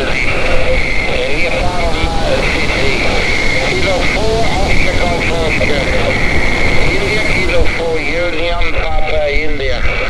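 Distorted single-sideband voice of a distant station coming through a Xiegu G90 transceiver's speaker, with hiss and a whining band of noise near the top that comes and goes.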